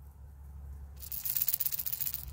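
A rattle bait fishing lure shaken by hand close to the microphone, the beads inside it rattling rapidly. The rattle starts about a second in.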